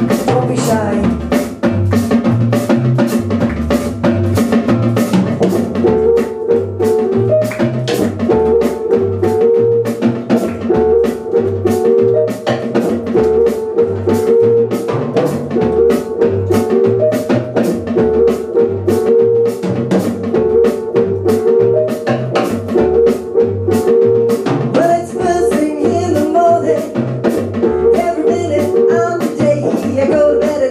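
Live rhythm and blues band playing a song: a steady drum-kit beat with rimshot snare strokes, a walking upright double bass line and electric guitar.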